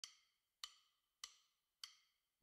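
Four faint, evenly spaced wood-block-like clicks, about 0.6 s apart: a percussion count-in to the background music track, which comes in on the next beat.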